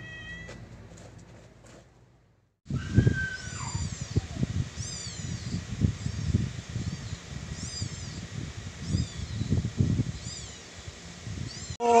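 Domestic cats meowing: a short meow near the start, then, after a brief break, a run of high meows about a second apart over irregular low thumps.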